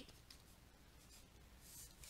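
Near silence, with faint scratching of a pen writing, a little stronger near the end.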